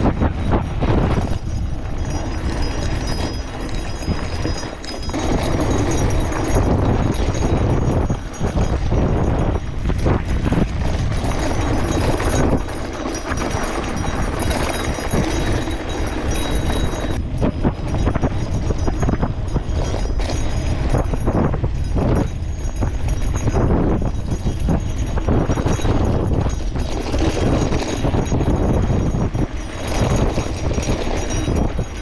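A steel gravel bike on wide 650b Maxxis tyres descending a rough, rocky dirt road: tyres crunching over loose stones while the bike rattles with a constant stream of small knocks and clatters, under a loud low rumble.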